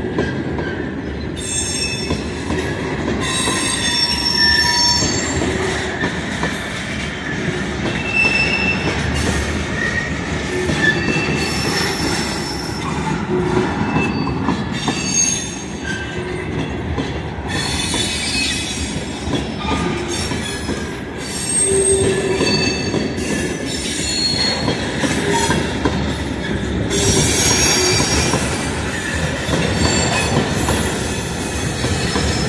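Loaded freight train of railroad tank cars rolling past close by: a steady rumble of steel wheels on rail, with short high-pitched wheel squeals coming again and again throughout.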